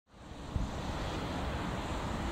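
Wind buffeting the microphone outdoors, a steady rushing noise with low rumbling gusts that fades in from silence over the first half second.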